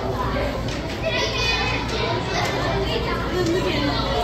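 Overlapping chatter of a crowd of visitors, children's voices among them, talking and calling out with no single clear speaker, over a steady low hum.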